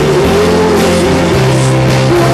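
Live rock band playing loud, with electric guitar and bass guitar.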